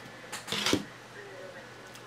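A few short rustling clicks about half a second in from hands handling a rigid plastic trading-card holder, over low room hiss.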